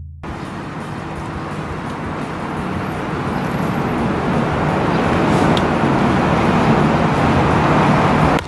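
Steady outdoor road-traffic noise, a broad rushing hum with a low drone underneath, growing gradually louder.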